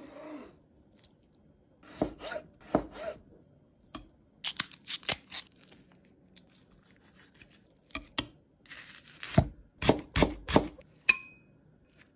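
Close-up food-preparation sounds: a knife cutting raw seafood on a plastic cutting board, with handling of lobster and crisp vegetables. The sounds come as clusters of short, crisp cuts, taps and crunches, and a brief ringing clink near the end.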